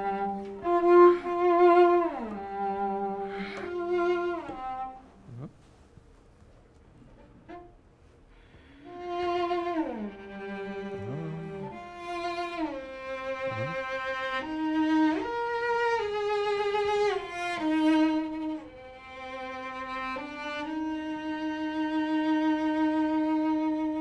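Solo cello playing a slow melodic phrase, the pitch sliding between notes in shifts and glissandi, with vibrato on the held notes. The playing breaks off for a few seconds after the first phrase, then resumes and ends on a long held note.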